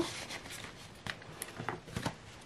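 Faint rustling of paper cash envelopes and polymer banknotes being handled, with a few light taps.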